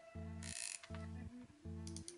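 Drennan Red Range feeder spinning reel worked by hand, its mechanism giving a soft, fine ratcheting whirr in three short bursts. It is quiet and smooth, without a loud clicking.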